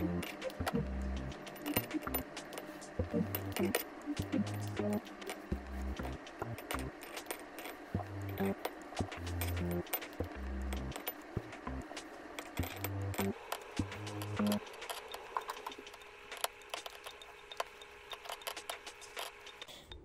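Scissors snipping through soft plastic fishing worms over a glass jar, a steady run of short clicks, over background music with a bass line that drops out about two-thirds of the way through.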